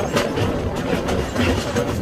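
Tractor engine running while the towed passenger wagon rattles and knocks, jolting over the rough rocky lake bottom, with irregular clatter over a steady rumble.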